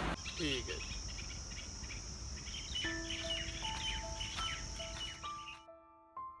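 Outdoor ambience of a steady high-pitched insect drone and many short bird chirps. Slow piano notes come in about halfway, and the insects and birds cut off suddenly near the end, leaving the piano.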